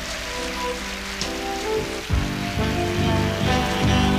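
Audience applauding over the live band's soft held chords. About two seconds in, the bass and drums come in with a steady beat as the intro of the next song starts.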